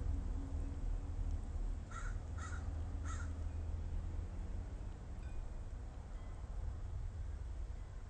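Three short, harsh bird calls in quick succession, about half a second apart, a couple of seconds in, over a low steady hum.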